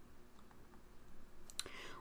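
A few faint ticks of a stylus tapping on a tablet while handwriting, then a short breath in near the end.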